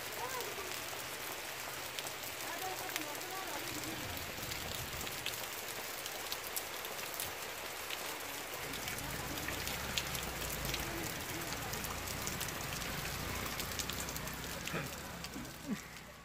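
Steady rain falling, with many small sharp drop ticks over an even hiss, and a low rumble joining about halfway through.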